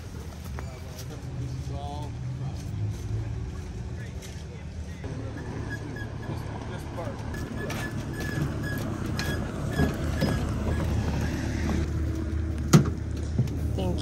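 Steady low engine rumble of a moving vehicle, with faint, indistinct voices over it. The rumble grows a little fuller about five seconds in, and a few sharp knocks come near the end.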